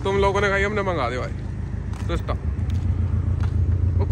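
A person's voice for about the first second, then a steady low rumble.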